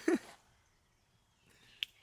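Near silence after a brief voice sound at the very start, broken by one small sharp click near the end.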